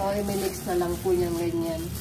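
A voice singing a slow melody in long held notes, with one note held for about a second near the end.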